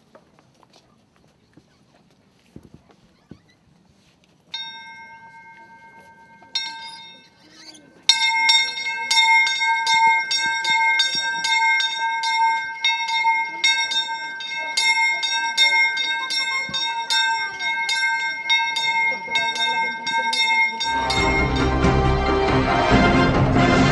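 A single bell struck once about four seconds in and again a couple of seconds later, then rung steadily at about two strokes a second, each stroke ringing on into the next. Loud music cuts in just before the end.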